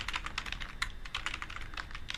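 Computer keyboard being typed on: a quick, uneven run of key clicks as a terminal command is corrected and retyped.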